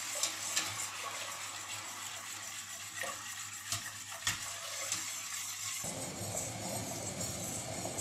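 A wire whisk stirring sugar into liquid in a stainless steel pot, the wires scraping and ticking against the pot's sides and bottom as the sugar dissolves.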